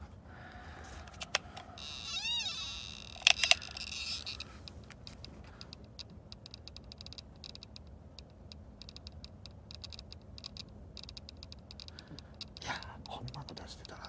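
Handling clicks and knocks, loudest in a quick cluster a little over three seconds in. Just before them there is a short pitched sound that rises and falls once. Faint rapid ticking follows.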